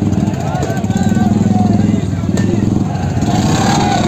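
Many motorcycle engines running in a procession, with a crowd's voices and shouts over them.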